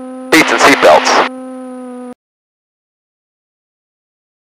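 A man's voice speaking briefly over a steady hum, then all sound cuts off abruptly a little after two seconds in, leaving dead silence.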